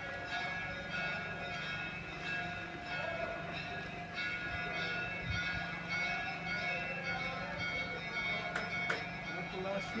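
Music and indistinct voices with long held tones over a steady low hum, and a few sharp clicks near the end.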